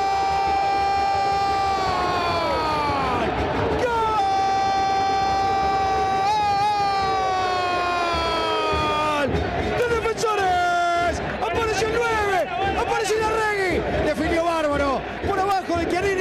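A football TV commentator's drawn-out goal cry, "Gooool": three long shouts, each held on one high note and falling in pitch at the end, with a breath between them. Rapid excited shouting follows from about 11 seconds in.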